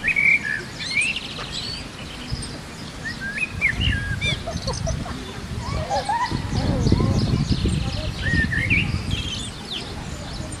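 Several birds chirping and twittering throughout in a dawn-chorus ambience, over a low rushing background that swells louder in the second half.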